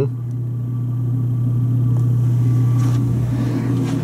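A steady low machine hum with no other clear event, the kind a room's ventilation or air-handling unit gives.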